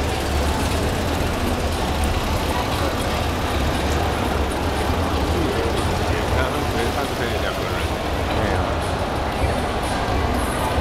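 Tata Nano's small two-cylinder petrol engine running steadily as the car drives slowly away, amid crowd chatter.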